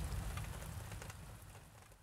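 Rain falling as a song's closing sound effect, a hiss of many small drop-ticks over a low rumble, fading out steadily until it is almost gone at the end.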